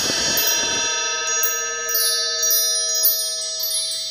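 A shimmering chime sound effect: several sustained bell-like tones ring together under light tinkling high notes, slowly fading.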